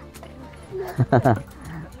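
A person laughing briefly about a second in, in three quick pulses, over faint background music and light clinks of hanging metal chains.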